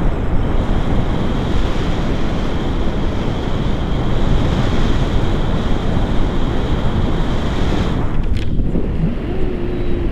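Steady wind noise blowing over the microphone of a camera flying with a paraglider in the air. The rush thins out somewhat near the end.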